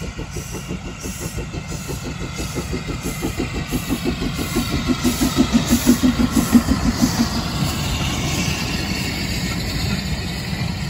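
Saddle-tank steam locomotive working a train past at speed, its exhaust beats quick and even, growing louder to a peak about six seconds in as it passes. The beats then fade and the carriages roll by with a steady rumble.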